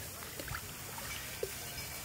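Swimming-pool water lapping and splashing softly around swimmers, over a steady background hiss, with a few small splashes.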